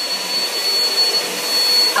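Household vacuum cleaner running steadily, a constant rushing noise with a high, steady whine.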